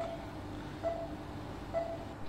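A pause in the narration: faint steady background noise with a low hum, and a couple of brief faint murmurs.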